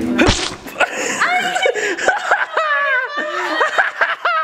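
A short, sharp noisy burst, then a quick series of short high-pitched squeals whose pitch slides up and down.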